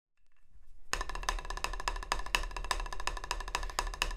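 Drumsticks tapping quickly on a drum practice pad: a fast run of dry, sharp clicks, several a second, starting about a second in, over a faint low hum.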